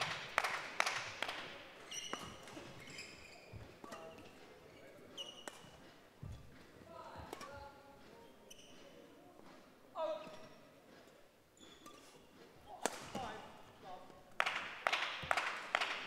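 Badminton play on a hall court: sharp taps of rackets striking the shuttle and players' footsteps in the first second and again over the last few seconds, with faint distant voices in the quieter stretch between.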